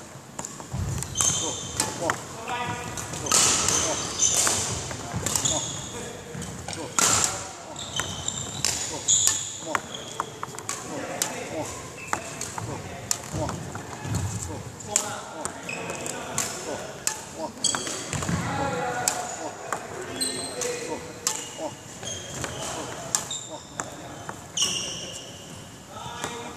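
Court shoes repeatedly squeaking and thudding on a wooden hall floor as a badminton player runs fast footwork drills, in quick uneven steps.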